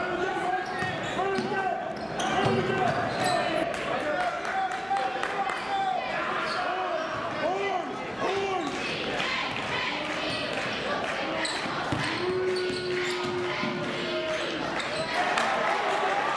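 Live gym sound of a basketball game: the ball bouncing on the hardwood court with many short knocks, and voices calling out, echoing in the hall. One steady held tone lasts about two seconds a little past the middle.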